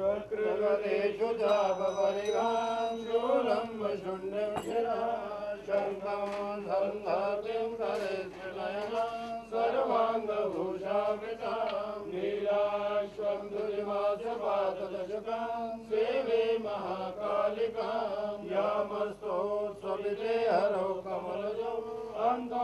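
Male chanting of Sanskrit mantras in an unbroken, melodic recitation during a Hindu aarti.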